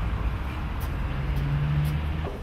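Steady low rumble of a motor vehicle engine in street noise, with a humming note that grows stronger in the second half.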